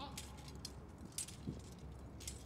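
Metallic jingling of marching guardsmen's equipment, light clinks coming in step about twice a second, over a low steady rumble.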